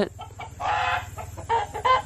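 A chicken calling once, a loud call of about half a second, followed by a few fainter short sounds near the end.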